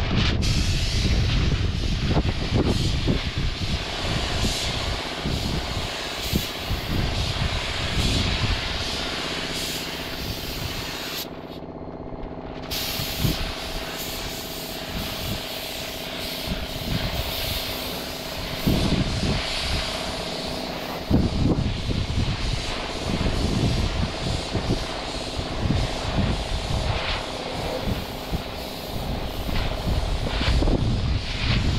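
Siphon-feed paint spray gun hissing as compressed air atomises paint onto the truck cab's panel, the hiss cutting out for about two seconds near the middle when the trigger is let go. Underneath runs a steady machine hum and irregular low rumbling.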